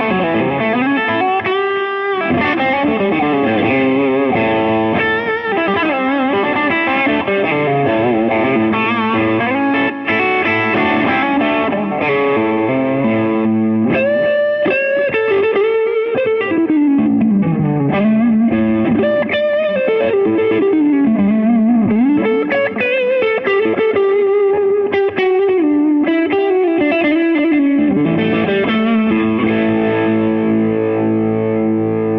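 Electric guitar with Lollar DC-90 P-90-style hum-cancelling soapbar pickups, played through a screamer-style overdrive pedal into a Supro 12-inch combo amp at low-to-mid gain. Continuous overdriven chords and lead lines, with bent and sliding notes in the middle stretch.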